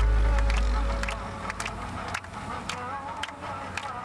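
A low held music note fades out about a second in, leaving the rolling noise of a van ride through city traffic, with many sharp clicks and rattles.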